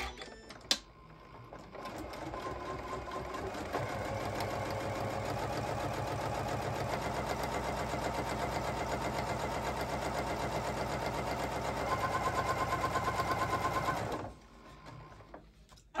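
Computerized sewing machine with a walking foot fitted, stitching a seam: a couple of clicks, then the machine starts about two seconds in, picks up speed over the next two seconds, runs steadily and fast, and stops abruptly near the end.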